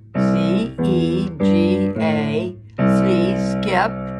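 Upright piano playing single notes one after another, about five in four seconds, each struck and left to ring: the notes of a C chord played one at a time instead of together.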